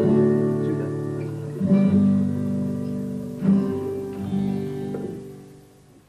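Acoustic guitar chords strummed about three times, each chord left to ring and die away, the sound fading out at the end.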